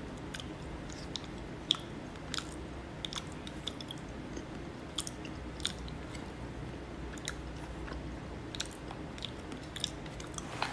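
A person eating with wooden chopsticks from a plastic container: chewing, with scattered short clicks and crunches, one or two a second, over a steady low hum.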